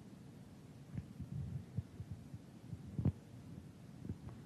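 Soft low thumps and bumps from a handheld microphone being held and shifted in the hand, coming in an irregular cluster from about a second in, the loudest one near three seconds in, over quiet room tone.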